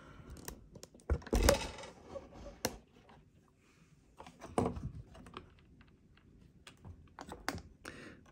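Hands reassembling a foam model aircraft's 3D-printed tilt-motor mount and pushrod: scattered small plastic clicks and knocks, the loudest clatter about a second and a half in.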